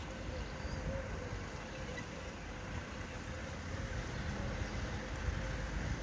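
Open-air ambience: a steady low rumble with a faint, wavering hum above it, while the congregation is silent in prostration.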